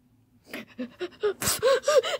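A person's breathy gasps that break into quick giggling about one and a half seconds in, with a single sharp knock just before the giggles.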